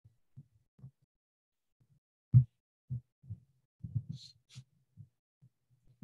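Scattered low, muffled thumps picked up by a computer microphone. The loudest comes about two and a half seconds in, a cluster of smaller ones follows, and a brief hiss comes near the four-second mark, all between stretches of near silence.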